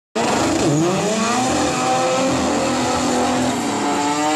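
Two drag cars, one of them a rotary-engined Mazda RX-3, launching off the line and accelerating hard down the strip at full throttle, engine pitch rising.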